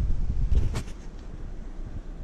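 Wind buffeting the microphone with a low rumble that eases off after the first second, and one short sharp knock just under a second in.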